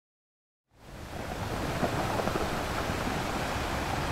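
Ocean surf washing, a steady rushing noise that fades in from silence about a second in and then holds level.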